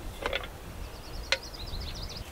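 A small bird singing faintly, a quick run of high chirps lasting about a second, with a couple of light taps near the start and one sharp click partway through.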